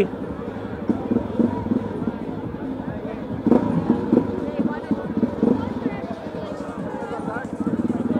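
Dirt bike engine running at low revs, a steady rapid pulsing, while the bike rolls slowly, with people talking close by.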